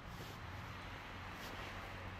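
Steady outdoor ambience: an even hiss with a low rumble underneath, with no distinct events.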